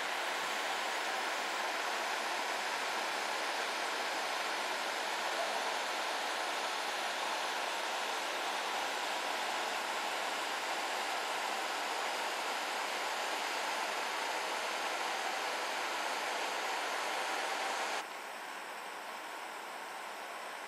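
A steady, even rushing noise with no speech. It drops quieter about two seconds before the end.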